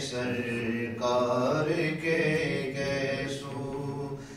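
Male voice reciting an Urdu naat, a devotional song in praise of the Prophet, sung in long drawn-out phrases with held notes.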